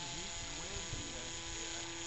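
Radio-control autogyro flying overhead: its motor and propeller give a steady hum at one pitch, with a thin high whine above it.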